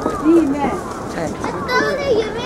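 Voices of people talking in a crowd of visitors, several overlapping speakers, some of them fairly high-pitched.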